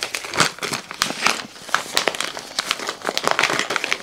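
Crinkling and rustling of a diamond painting toolkit's packaging as it is peeled open and handled by hand, an irregular run of crackles throughout.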